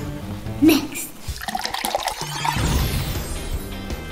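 Background music with a watery gushing, pouring sound in the middle, as coloured foam surges up and out of tall glass cylinders.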